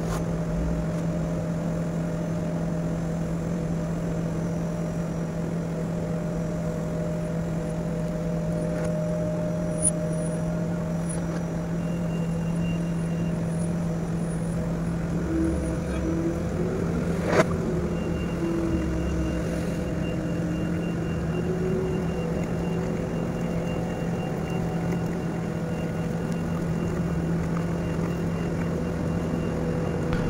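Large mobile crane's diesel engine running steadily with a constant low hum while the crane raises its luffing jib. A single sharp click about 17 seconds in.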